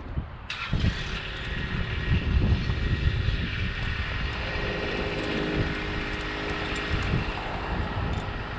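A Genie TZ50 boom lift's power unit starts suddenly about half a second in and runs as a steady hum while the bucket is moved. Wind rumbles on the microphone underneath it.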